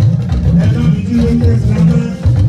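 Live church band music: a bass guitar line with guitar and percussion playing steadily.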